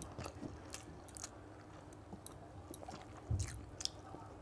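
A person eating rice and chicken curry by hand: faint wet mouth sounds and chewing, with fingers squishing rice on a steel plate. A louder smack comes just after three seconds in, as a handful goes to the mouth.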